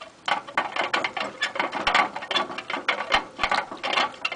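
Hamster activity in a wire-and-plastic cage: a quick, irregular run of sharp clicks and rattles, several a second, starting about a quarter second in.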